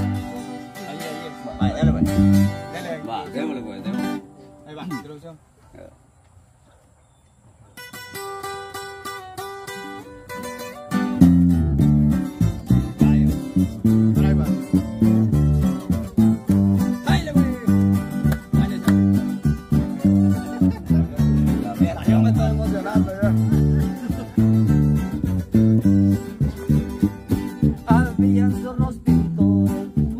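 Live acoustic guitars and an electric bass guitar playing. The music dies down about four seconds in. From about eight seconds a guitar picks a melody, and near eleven seconds the strummed guitars and bass come in together in a steady rhythm.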